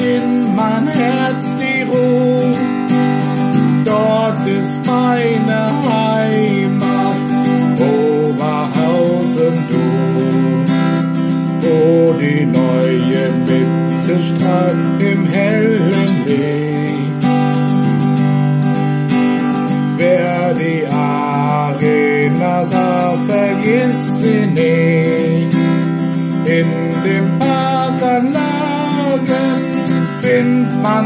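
Acoustic guitar being strummed through an instrumental passage with no lyrics. A wavering melody line runs over steady held chords.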